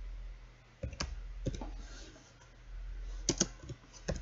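A few keystrokes on a computer keyboard, in two short clusters: about a second in and again a little after three seconds in, over a low steady hum.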